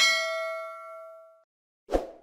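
Notification-bell 'ding' sound effect from a subscribe-button animation: one bright metallic strike that rings and fades out over about a second and a half. A short burst of noise comes near the end.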